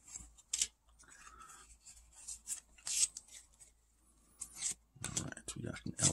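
Faint handling of Pokémon trading cards: a few short scrapes and snaps as the cards from a freshly opened booster pack are slid apart and moved through the stack in the hands.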